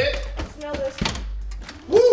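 Mostly people's voices, with a few short knocks between them.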